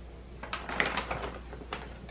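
A German Shepherd mix dog chewing a treat: an irregular run of short clicks starting about half a second in and lasting roughly a second.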